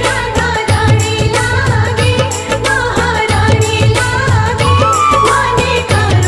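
Krishna bhajan music: a melody with gliding, ornamented pitch over a steady, repeating bass beat.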